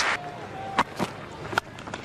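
Low cricket-ground background with three sharp knocks. The last of them, about one and a half seconds in, is the bat striking the ball for a hard shot through the offside.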